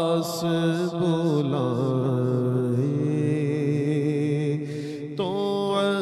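A man singing a naat, an Urdu Islamic devotional song, solo into a microphone. His notes waver with ornaments, one note is held for about two seconds, and there is a short break about five seconds in before the voice comes back.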